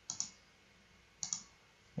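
Computer mouse button clicking: two short pairs of clicks, one just after the start and one a little over a second in.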